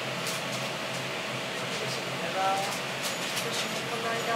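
Steady restaurant background noise: an even hum of room and ventilation noise, with a faint voice about two and a half seconds in and a few light clicks.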